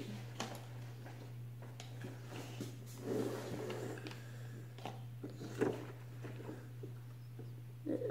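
A steady low hum under faint scattered rustles and knocks of rubber being handled, with a short louder noisy sound about three seconds in.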